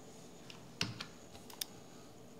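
A few sharp, separate clicks from a computer keyboard and mouse as a modelling program is operated. The loudest click comes just under a second in, with a quick pair about halfway through the second second.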